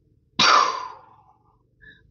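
A woman breathes out in one long audible sigh about half a second in, starting suddenly and fading away: the out-breath of a deliberate calming breath.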